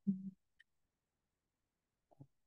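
A woman's short, low hum, cut off within the first half second, followed about half a second in by a single faint click; the rest is near silence.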